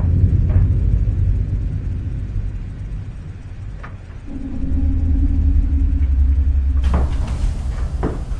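A loud, deep rumble with a steady low hum joining in about four seconds in. Near the end it gives way to sharper noise with a few clicks.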